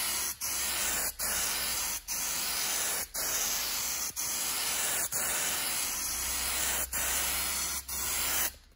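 Aerosol can of textured truck bed coating spraying in a series of short bursts, a steady hiss broken by brief pauses about once a second, with one longer burst near the end.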